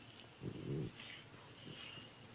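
A hand rubbing and pressing damp mixed-grain flour against a steel bowl, making soft scraping and rustling. A short, louder low sound stands out about half a second in.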